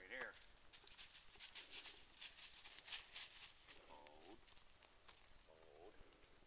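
A dog running through dry fallen leaves: a quick series of faint crunching rustles, loudest about halfway through. Short voice calls come near the start, a little past the middle and near the end.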